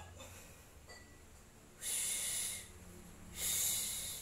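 A woman breathing hard under exertion: two hissing exhalations, the first about halfway through and the second about a second and a half later near the end.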